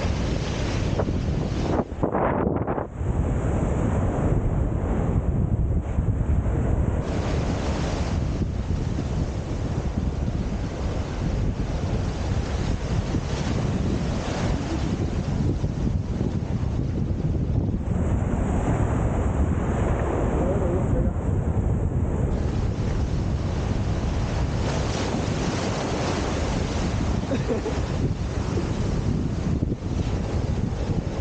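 Small waves washing up and draining back over sand in the shallows, with steady wind rumble on the microphone.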